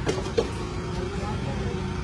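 Steady low rumble of street traffic, with a short sharp clink of a steel ladle against a steel pot about half a second in.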